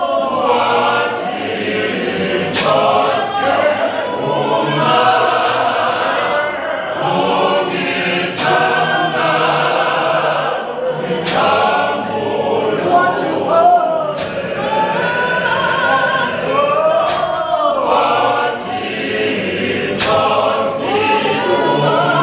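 Gospel choir singing in harmony, with a male lead voice in front. Sharp percussive hits sound every few seconds.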